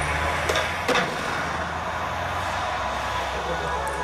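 City street ambience at night: a steady low vehicle rumble under a hiss of traffic noise, with two short sharp clicks about half a second and a second in.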